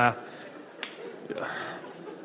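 A man's short 'ah' at the start, then a low murmur of a live audience with a brief swell of laughter, broken by one sharp snap-like click a little under a second in.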